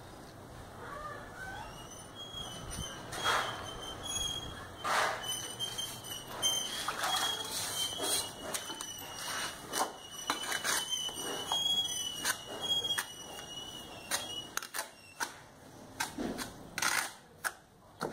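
Steel mason's trowel scraping and tapping as mortar is scooped from a tub and spread on a refractory brick: a run of short scrapes and clicks. A thin, high squeaky tone comes and goes through the middle.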